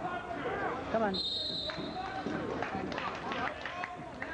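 Spectators' voices shouting and talking during a wrestling bout, with one short, high, steady whistle blast a little over a second in.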